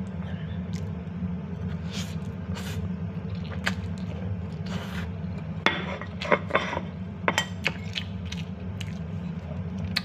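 A man slurping and eating a mouthful of very spicy instant noodles: short scattered slurps, sucked breaths and mouth noises, busiest from about five and a half to eight seconds in, over a steady low room hum.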